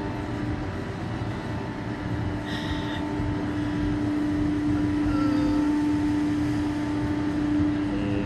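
Steady machinery hum from the SlingShot reverse-bungee ride while the capsule is held at the base before launch. A low droning tone swells louder about halfway through and holds until near the end.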